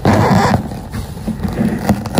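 Blue paper towel being rubbed across a smooth white plastic surface to clean it. There is one loud wiping stroke at the start, then quieter rubbing, with a couple of small clicks near the end.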